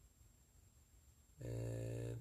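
Quiet room tone with a faint low rumble, then about one and a half seconds in a man's voice starts a long, level hesitation sound, an 'uhhh' held on one pitch.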